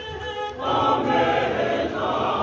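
A congregation singing an isiXhosa hymn unaccompanied. A single voice carries the line at first, then the full congregation comes in, much louder, about half a second in.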